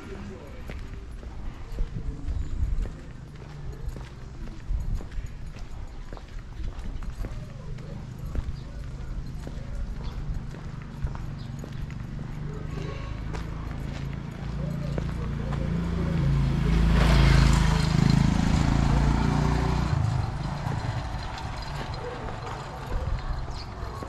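Footsteps of someone walking on a concrete street, in outdoor ambience with voices. From about 16 to 20 s a louder low hum with hiss swells and fades.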